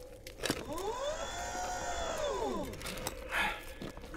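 Iron Man armour servos in a film sound mix: a mechanical whine that rises and then falls in pitch over about two seconds, followed by a short scraping burst near the end.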